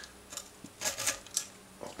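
Crisp wafer crackling as a plastic knife cuts into a Napoli milk-hazelnut wafer bar and works its layers apart: a short crunch about a second in, with a few lighter clicks around it.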